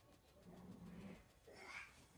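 Near silence: room tone, with a faint, brief low hum around the middle.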